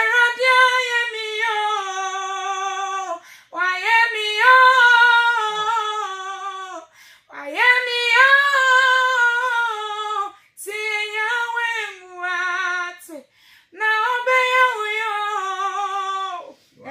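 A woman singing unaccompanied in long held notes, in phrases of two to three seconds with short breaks for breath between them.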